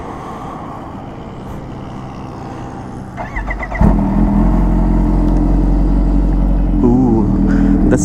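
Kawasaki H2R's supercharged inline-four being started: a brief crank a little after three seconds in, then the engine catches and settles into a loud, steady idle.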